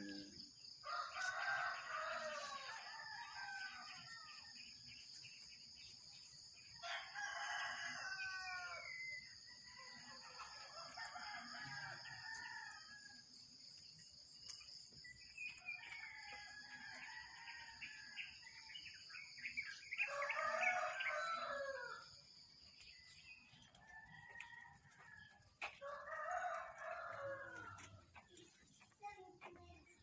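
Roosters crowing, about six long crows spaced through the stretch, with a steady high-pitched buzz behind them that stops a few seconds before the end.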